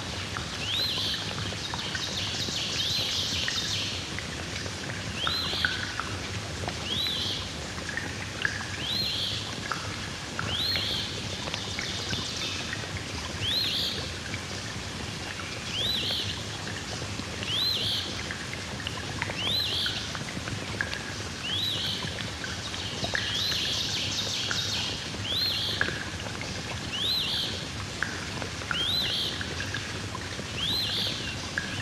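Field-recorded soundscape: a bird repeats a short chirp about once a second, with fainter calls lower down, over a steady low hum and outdoor background noise.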